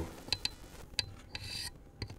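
A few faint sharp clicks, about a third of a second in and again a second in, and a short rasping rub around a second and a half in.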